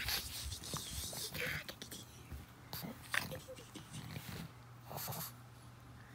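A pug chewing and mouthing a plush lamb toy, scattered soft noises of its mouth and breath against the fabric, over the steady low hum of an electric fan.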